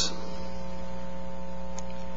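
Steady electrical mains hum: a low buzz with several fixed overtones that holds unchanged through a pause in the speech.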